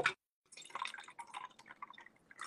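Cola being poured, fizzing and crackling with carbonation, starting about half a second in.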